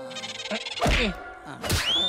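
Cartoon slapstick sound effects: two sharp whacks about a second apart, then a whistling glide that rises and falls near the end.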